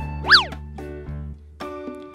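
Children's background music with light, steady notes. About a third of a second in, a short cartoon sound effect sweeps up in pitch and straight back down.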